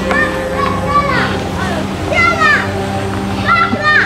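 Children's voices calling out in short, high shouts that rise and fall, three times, over steady background music.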